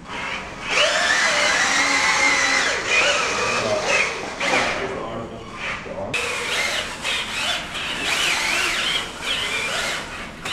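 Electric drive motors of a small wheeled robot whining as it drives, the pitch wavering as it speeds up, slows and turns. It comes in strongly about a second in and dips briefly past the middle.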